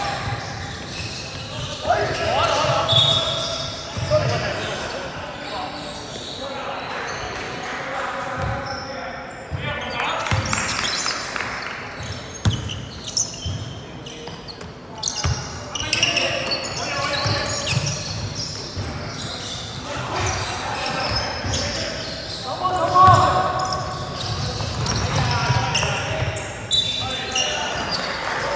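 Indoor basketball game: a basketball bouncing on the court in repeated knocks, with players' voices calling out now and then, echoing in the hall.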